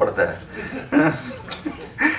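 A man chuckling into a microphone, in a few short voiced bursts mixed with speech.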